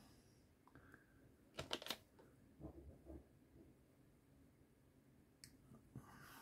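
A quick cluster of sharp clicks about a second and a half in, a few soft knocks after it and a single click near the end: sprue cutters snipping and trimming a small plastic model part.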